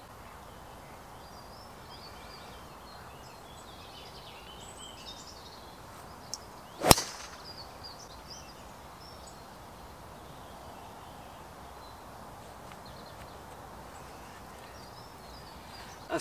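Golf driver striking a ball off the tee: a single sharp crack about seven seconds in.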